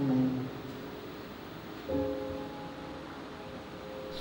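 Quiet keyboard chords: one held chord fades away at the start, and a new chord is struck about two seconds in and left ringing.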